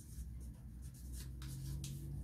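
Marker pen writing on paper: a quick series of short scratchy strokes as a word is lettered by hand.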